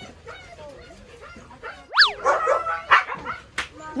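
Siberian huskies whimpering and yelping, with one sharp high yelp about halfway through that drops steeply in pitch, followed by a second or so of wavering whining.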